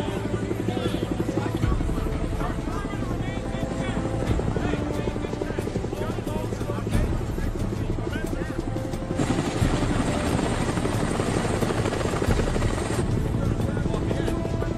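Helicopter rotors running with a steady, rapid chop, under a film score and background voices. A loud rush of wash-like noise comes in about nine seconds in and drops away about four seconds later.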